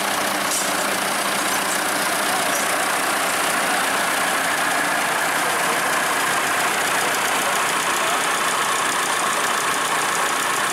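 Nuffield 10/60 tractor engine idling steadily.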